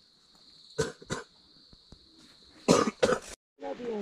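A steady, high-pitched insect drone from the forest. Over it come a few short human vocal sounds, such as coughs or clipped words, about a second in and again near three seconds. The sound drops out briefly just before the end.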